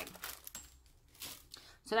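Faint crinkling rustles of a thin plastic cellophane treat bag being handled and set down, a few short soft bursts.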